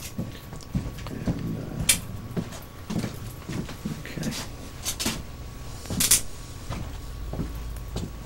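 Plastic flex cuffs being handled at a man's wrists: scattered clicks and rustling, with three short sharp rasps about two, five and six seconds in.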